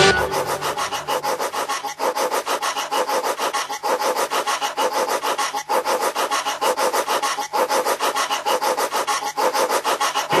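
Electro-house track in a breakdown: a gritty, rasping electronic figure repeating about four times a second, with no kick drum or bass, over a faint steady low tone.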